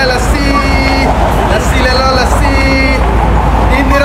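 A man's voice calling out in long, drawn-out, sing-song notes, like a vendor's cry, over a steady low rumble.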